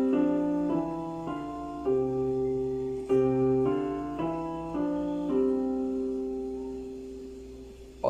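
Piano played with both hands together in a slow five-finger exercise starting from the thumbs, one pair of notes after another at about two a second, then a final pair held and fading away over the last few seconds.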